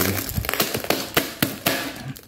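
Parcel packaging being handled: plastic wrap and packing tape crinkling, with irregular sharp clicks and taps.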